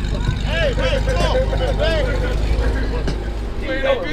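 Several people's voices talking and calling out over the steady low rumble of an idling vehicle engine; the rumble drops away about three and a half seconds in.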